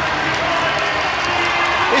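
Ice hockey arena crowd noise, a steady din of the crowd reacting as a fight on the ice is broken up.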